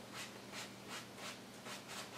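Wide flat paintbrush stroked back and forth across a wet oil-painted canvas, a soft, even swishing at about four strokes a second.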